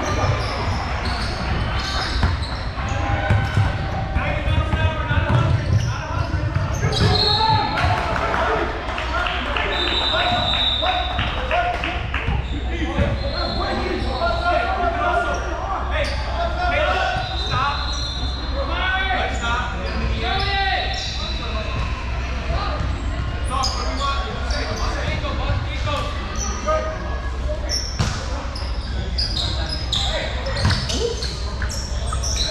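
Basketball game sounds in a large echoing gym: a ball bouncing on the hardwood court, sneakers giving short high squeaks, and players and spectators calling out.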